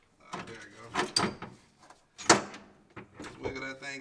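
Metal hand tools clanking against engine parts while a bolt is worked loose at the front of an LS V8: a few knocks about a second in and one sharp clank a little past two seconds in, the loudest.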